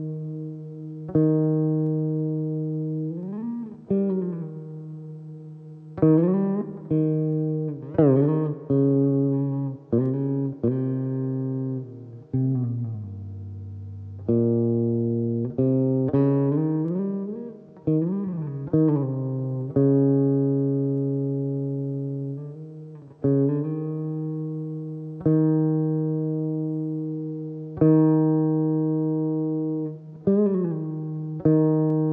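Saraswati veena played solo in a slow, unhurried melody. Single plucked notes ring out and fade over a couple of seconds, many bent upward and back in smooth pitch slides, over a low ringing note that keeps sounding.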